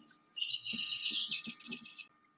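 A bird chirping faintly: a high call that breaks into a fast trill of short notes near the end.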